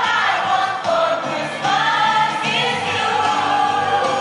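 A mixed group of young voices singing a Christmas carol together into microphones, holding long notes in the second half.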